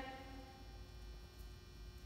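Quiet room tone with a faint steady hum; no distinct action sound.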